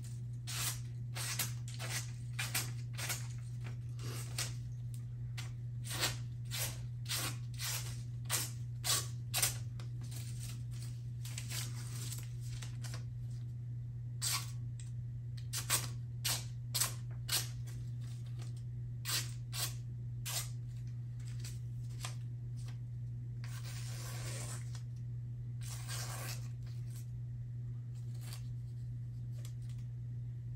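Freshly sharpened, polished knife edge slicing through thin paper in a sharpness test: a string of short, crisp cuts, coming quickly for the first ten seconds or so, then more sparsely, with two longer drawn-out cuts past the middle. A steady low hum runs underneath.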